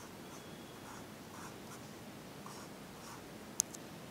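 Pencil scratching on paper in short, light drawing strokes, several in a row. A single sharp click sounds about three and a half seconds in, with a fainter one just after.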